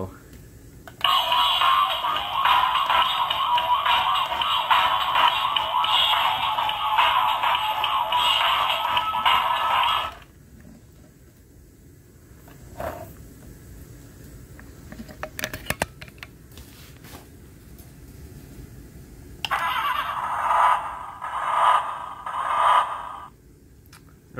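A toy truck's built-in sound module playing a recorded song through its small speaker for about nine seconds. It then goes quiet apart from a few clicks, and near the end plays a short run of four or five sounds about a second apart.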